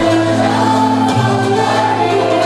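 Mixed choir singing a Turkish art music (Türk sanat müziği) song in makam Nihavend, holding long notes that change pitch about a second in.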